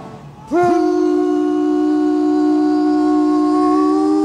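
Live rock band with a woman lead singer: the music dips briefly, then about half a second in a long note scoops up into pitch and is held steady.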